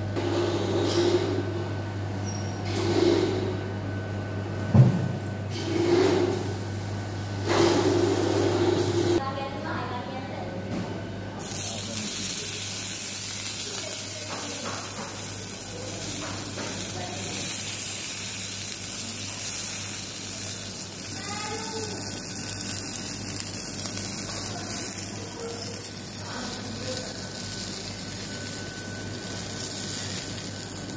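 Chicken lula kebab sizzling on a hot flat-top griddle: an even hiss that starts about eleven seconds in and holds steady to the end. Before it there are a few rustles of aluminium foil being unwrapped over a steady low hum.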